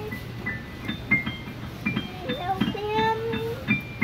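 Digital piano keys pressed by children: scattered single notes and clusters at many different pitches, struck unevenly, each with a soft key thud.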